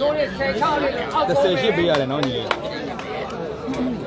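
Crowd chatter: several people talking and calling out at once, with a single sharp click about halfway through.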